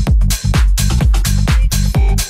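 Tech house dance music from a DJ mix: a steady four-on-the-floor kick drum about twice a second over a deep bassline, with crisp hi-hat hits between the kicks.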